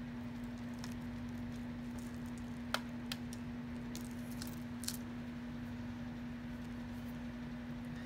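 A few light clicks of beads and metal costume jewelry being handled and picked through by hand, over a steady low hum.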